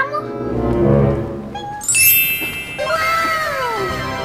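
Edited-in comedy sound effects over background music: a bright twinkling magic-sparkle effect about two seconds in, then a few falling, gliding tones near the end.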